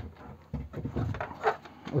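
Hands handling the florarium's plastic base and its felt separator layer: a sharp click at the start, then light knocks and rustling.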